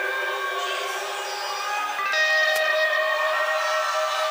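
Live rock music heard through a performer's in-ear monitor mix: electric guitar with held notes whose pitch changes every second or so, and very little bass.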